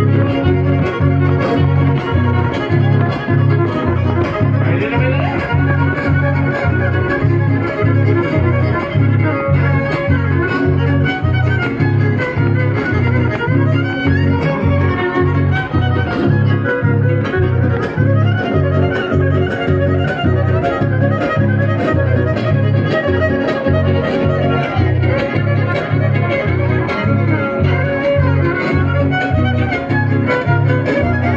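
Live band playing a fiddle-led son with guitar over a steady, evenly pulsing bass beat, loud and continuous.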